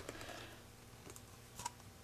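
Quiet room tone with a few faint clicks and taps from small objects being handled, one right at the start and a couple more about a second and a half in.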